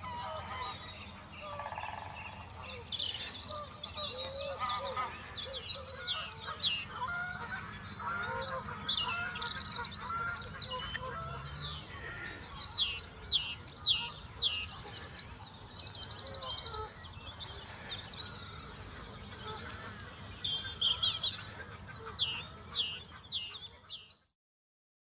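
Spring birdsong from many songbirds at once, with a great spotted woodpecker drumming near the start and a wood pigeon cooing. The loudest part is runs of sharp, high, repeated notes about halfway through and again near the end.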